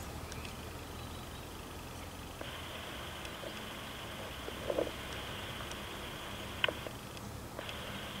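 Faint steady background hum, then a two-way radio channel held open, hissing faintly, from about two and a half seconds in until shortly before the end. A short faint sound falls in the middle and a single click comes near the end of the hiss.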